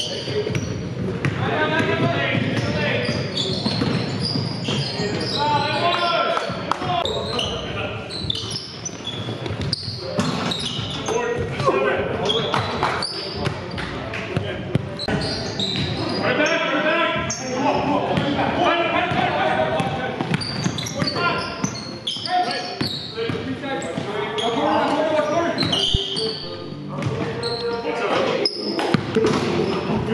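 Live basketball game sound in a gym: a basketball bouncing on the hardwood court amid players' indistinct shouts and chatter, echoing in the hall.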